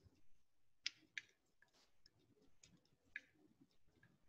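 Faint, irregular clicks and light scraping of a metal palette knife against the palette while mixing oil paint, with the sharpest clicks about a second in and again a little after three seconds.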